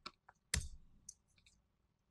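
About three sharp computer mouse clicks with a few fainter ticks between them, the loudest about half a second in.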